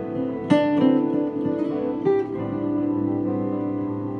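Acoustic guitar being played: chords ring on, with two sharper strums, one about half a second in and one about two seconds in.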